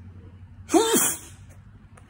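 A man sneezes once: a single sudden, loud sneeze about three-quarters of a second in, short and voiced.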